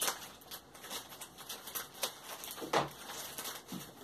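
Plastic diaper package crinkling and rustling as it is torn open by hand, in scattered short crackles.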